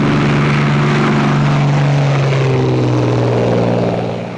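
Propeller aircraft engine running loud and steady, its tone shifting slightly lower about halfway through.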